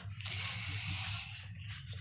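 A disposable diaper rustling as it is shaken out and handled, a soft continuous rustle.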